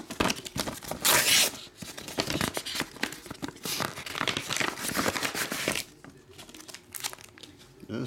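Paper rustling and crinkling as hands open a manila clasp envelope and slide out a card in a plastic sleeve, with many short crackles, loudest about a second in, then quieter handling for the last couple of seconds.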